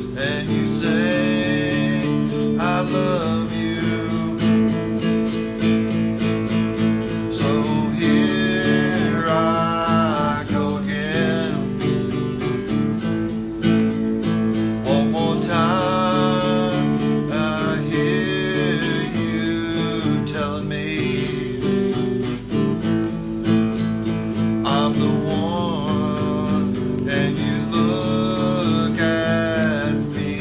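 Acoustic guitar played in chords under a man singing a song, with a woman's voice singing along.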